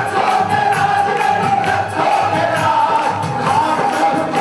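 A Hindi devotional bhajan performed live: a man singing into a microphone, with a crowd singing along, over keyboard and a steady percussion beat.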